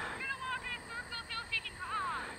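A horse whinnying faintly: a quavering, pulsing call lasting about a second and a half that falls in pitch at the end. It fits a mare that is probably a little herd bound, calling for her herd mates.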